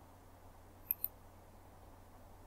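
A computer mouse button clicked about a second in: two sharp ticks in quick succession, the press and the release. A faint steady hum sits underneath.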